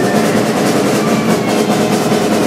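A live rock band plays loudly: distorted electric guitar chords and bass ring on under rapid drum-kit hits.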